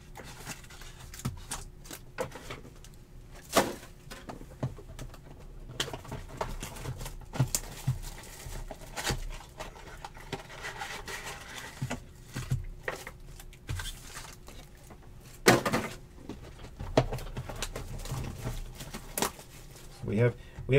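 Plastic shrink wrap crinkling and cardboard being handled as a sealed trading-card hobby box is unwrapped and opened, with its foil-wrapped packs set down on a table mat. Irregular crackles and rustles with scattered sharp knocks, the loudest about four seconds in and again past the middle, over a faint steady hum.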